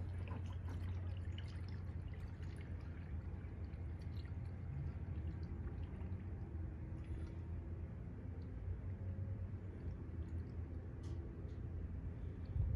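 Diesel fuel pouring from a plastic gas can into a new fuel filter, filling its cavities to prime it before installation. A steady low rumble runs underneath.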